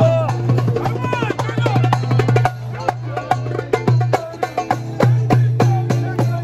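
Live street band music: quick, sharp percussion strokes over a steady low bass note, with voices singing along.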